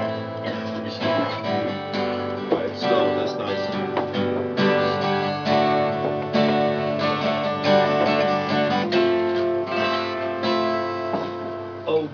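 Acoustic guitar strummed in steady chords, the instrumental introduction to a song before the singing comes in.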